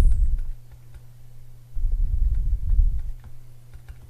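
Faint ticks and taps of a stylus writing on a tablet, over a low rumble that comes and goes and a steady low hum.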